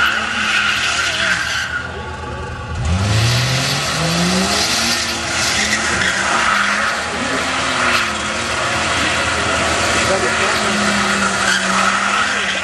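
Nissan Skyline R31 doing a burnout: engine held at high revs with the rear tyres squealing and skidding on the road. About two seconds in the revs drop off briefly, then climb back up and the tyre squeal carries on.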